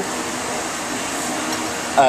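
Steady, even hiss of a working restaurant kitchen's background noise, with no knocks or clicks.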